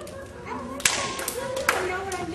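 A few scattered hand claps, two of them sharp and loud about a second apart, among people's voices as a dance routine ends.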